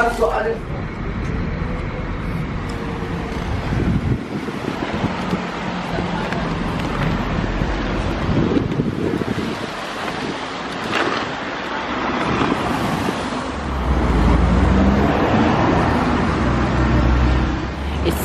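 Street traffic noise with wind rumbling on the microphone, the low rumble strongest near the end.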